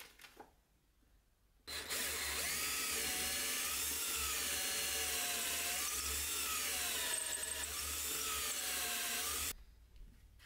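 Cordless drill boring a hole through a small wooden block with a twist bit. It starts suddenly a couple of seconds in and runs for about eight seconds, its motor pitch wavering up and down as the bit bites into the wood, then stops.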